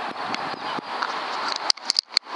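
Steady rush of wind on the microphone, broken in the last half second by a few sharp clicks.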